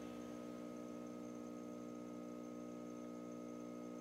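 A steady, low hum of several held tones, a sustained chord in the background music, with no beat.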